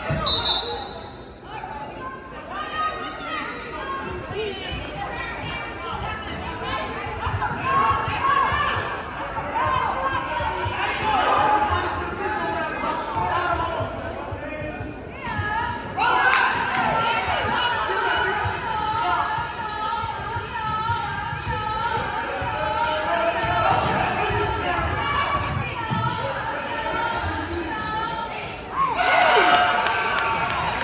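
Basketball bouncing on a gym floor during play, with spectators' voices and calls throughout, echoing in a large gymnasium.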